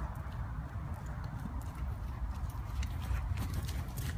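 Hoofbeats of a Morgan horse moving around a dirt arena, heard as irregular soft thuds and sharper ticks that become more frequent in the second half, over a steady low rumble on the microphone.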